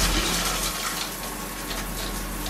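Shower head on a riser rail running, a steady spray of water.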